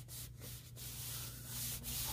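Hands rubbing and smoothing the paper pages of a notebook, pressing them flat along the centre crease: a soft, uneven brushing of skin on paper.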